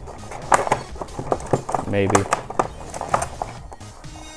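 Plastic blister packaging of a carded toy-car five-pack crackling and clicking in quick irregular snaps as it is gripped and turned over to be opened.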